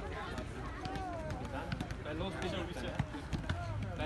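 Background chatter of children's voices, with scattered light taps and thuds of footballs against players' shoes.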